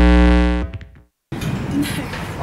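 Final held chord of a radio station ident jingle, many steady tones sounding together, fading out under a second in. A short silence follows, then the background noise of an outdoor recording starts.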